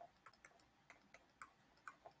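Faint, irregular clicks of a pen stylus tapping on a writing surface as words are handwritten, about six in two seconds.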